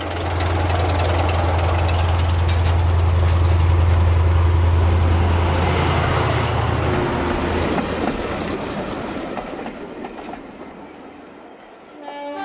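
Diesel locomotive hauling coaches past: a steady low engine drone over the rumble of wheels on track, building to a peak and then fading away, the drone dropping out about two-thirds of the way through.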